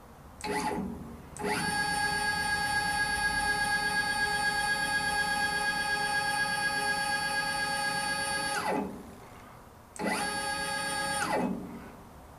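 Stepper motors of the CNC-converted Grizzly G0705 mill/drill driving the table: a brief whine, then a long steady whine of about seven seconds that drops in pitch as the move slows to a stop. A second, shorter move near the end winds down the same way.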